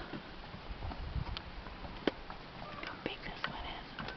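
Hushed, whispered voices with scattered small clicks and knocks.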